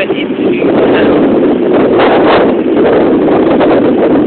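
Strong wind buffeting a phone's microphone: a loud, steady rushing rumble.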